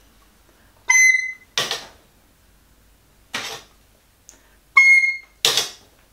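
A recorder playing two short high notes, about a second in and again near five seconds, each held for about half a second, in a high-note exercise of finding the note quickly and then letting go. Short breathy puffs come between and after the notes.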